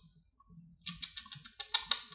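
Typing on a computer keyboard: a quick run of keystrokes starting about a second in.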